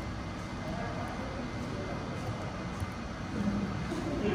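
Steady whir and hiss of a running air-cooled 300 W pulse laser cleaning machine's cooling fans, with the laser not firing.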